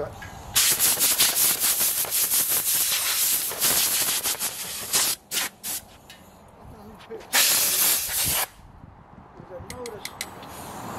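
Compressed-air blow gun hissing: one long blast of about four seconds, then two short bursts, then another blast of about a second near the end.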